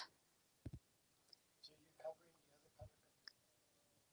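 Near silence with a few faint clicks and soft knocks, from a camera being handled and moved into position.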